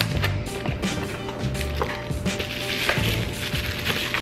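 Cardboard packaging, paper inserts and plastic bubble wrap rustling and crinkling as a camera is unpacked from its box, with many small crackles and clicks, over background music.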